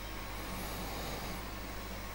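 Faint steady hiss with a low electrical hum from the microphone and sound-system chain, in a pause with no voice.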